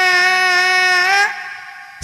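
A singer holding one long, steady high vocal note with no accompaniment, which breaks off and fades away about a second in.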